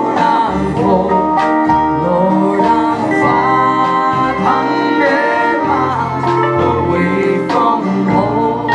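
Live country-folk band playing a steady mid-tempo song: acoustic guitar, steel guitar, fiddle, double bass and drums, with a woman singing lead.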